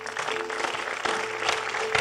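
Congregation applauding, with a church band's instrument holding sustained chords underneath that shift pitch a couple of times.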